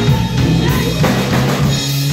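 A live funk band playing loud, with the drum kit's bass drum and snare to the fore over electric guitars and keyboard.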